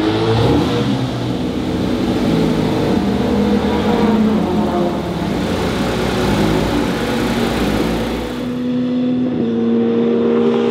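Porsche 911 GT3 RS flat-six engine running, its pitch shifting up and down, then holding steady near the end.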